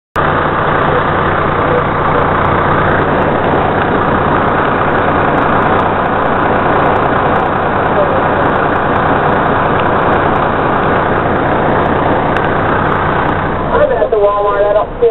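Fire rescue truck's engine running steadily at slow parade pace, heard from the jump seat inside the cab: a low steady drone under a loud, even rushing noise.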